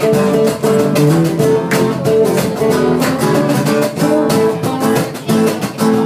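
Live acoustic band playing an instrumental intro: strummed acoustic guitars with bass and a steady cajon beat.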